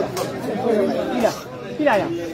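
Spectators talking over one another in lively chatter around the court, with two short sharp knocks, the first near the start and the second just past a second in.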